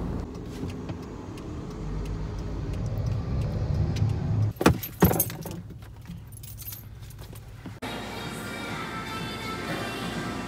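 Car in motion heard from inside the cabin, a low road and engine rumble that grows louder over the first few seconds. About halfway through there is a brief clatter with two sharp clicks. From near the end a different steady backdrop with faint music takes over.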